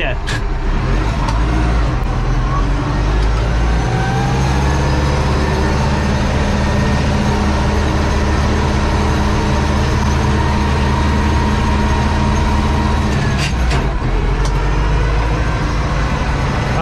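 Tractor diesel engine running, heard from inside the cab: revs climb over the first few seconds, then hold steady under load, easing off with a few clicks near the end.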